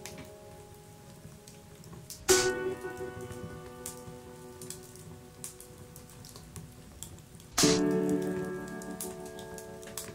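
Dark electronic music: two loud struck chords, a little over two seconds in and again near eight seconds, each ringing on and slowly fading, over a sparse crackle of small clicks.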